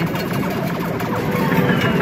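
Electronic arcade game music and jingles over the busy din of an arcade.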